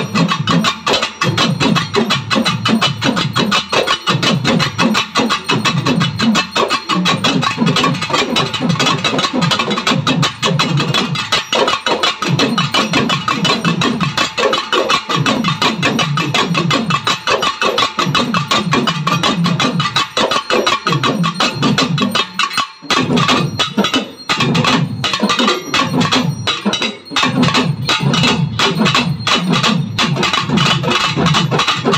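An ensemble of pambai, the Tamil double drum struck with sticks, played together in a fast, dense rhythm, with the low drum tones swelling in regular waves. The strokes thin out briefly about two-thirds through, then resume at full pace.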